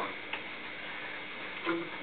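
Quiet room hiss with a single faint tap about a third of a second in: a hand tapping the rubber pad of a plastic video-game drum-kit controller.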